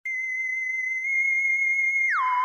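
A steady, high-pitched electronic test tone near 2 kHz that starts abruptly and holds one pitch, growing slightly louder about a second in.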